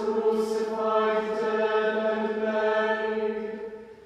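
Voices chanting in unison on one held reciting note, the words' s-sounds coming through, the phrase fading away near the end; a new phrase begins just after.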